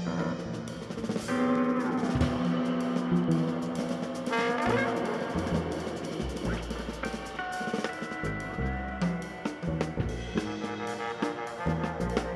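A jazz band playing live: a trombone plays over drum kit and bass, with electric guitar picking beneath. There is a sliding fall in pitch early on and a quick rising run a little before halfway.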